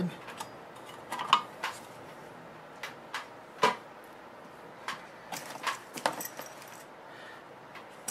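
Scattered light metallic clicks and knocks from a car amplifier's metal cover and parts being handled and lifted off on the bench, the sharpest about a second in and again near four seconds.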